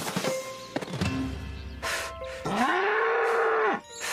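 A bull mooing once: one long call in the second half that rises at the start and then holds for over a second. Several knocks and thumps come before it.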